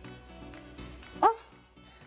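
Soft background music, with one short, sharp exclamation from a person's voice, rising in pitch, about a second in.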